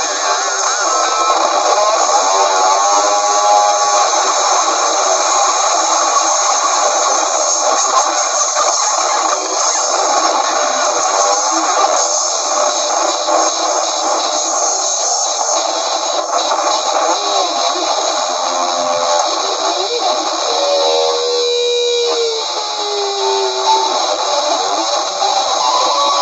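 Live noise-rock band in an instrumental passage: electric guitars make a dense, continuous wall of distorted noise, with drums. Wavering, bending guitar pitches come through about three seconds in and again near the end.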